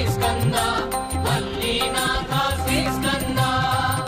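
Hindu devotional chant to Skanda sung over music, with sustained drone-like tones and a steady low beat.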